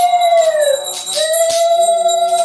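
A conch shell (shankha) blown in a long held note. About half a second in the note sags in pitch and breaks off, then it comes back steady about a second in. A hand bell rings without a break.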